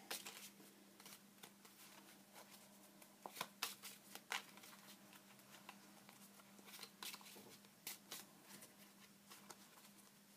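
Tarot cards being handled, heard as faint, irregular snaps and rustles scattered through a low steady hum.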